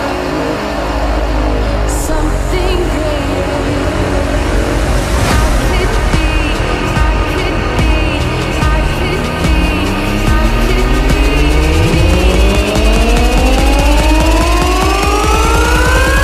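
Electronic dance track with a dense, heavy bass line and no vocals. In the second half a synth sweep rises steadily in pitch, building up toward the next section.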